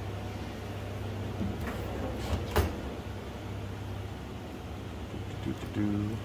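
Steady low hum of laboratory equipment, with a few light knocks around two seconds in.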